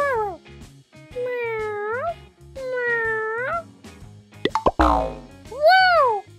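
Several drawn-out cat meows, then a sudden plop sound effect about five seconds in as a small toy paint pail lands on a toy dog, followed by one more meow, over light background music.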